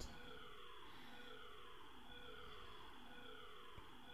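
Faint siren wailing in the background, falling in pitch and starting again high a little more than once a second, with a steady high tone under it.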